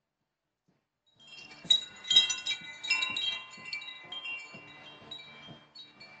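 Wind chimes ringing, with many strikes at several pitches starting about a second in, loudest early on and thinning out toward the end.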